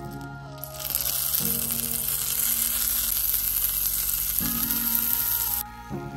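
Cherries sizzling as they go into hot caramelised sugar and butter in a frying pan. The sizzle starts about a second in and cuts off suddenly near the end, over soft background music.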